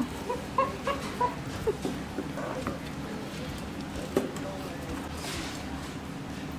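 Busy diner room noise: short voice fragments in the first two seconds, then a steady background hum with a single light clink about four seconds in.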